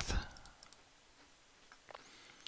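A few faint, short clicks from working a TI-84 Plus calculator emulator on a computer, as its menu is stepped over to MATH. The clicks fall about half a second in and again near the end, with a low hush of room tone between them.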